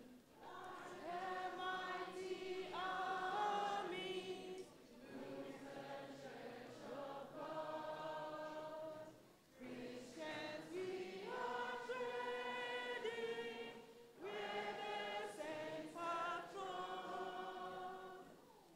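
A children's choir singing together with a woman leading at the microphone, in sung phrases a few seconds long with short breaks between them.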